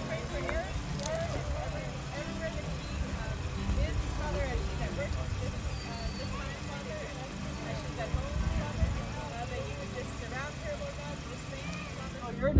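Voices praying aloud, distant and too faint to make out words, over a steady low rumble.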